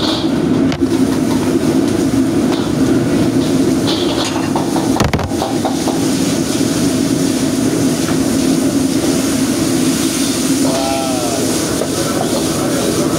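Restaurant gas wok burner and kitchen exhaust hood running with a steady loud roar, with a few metal clinks of the ladle against the wok.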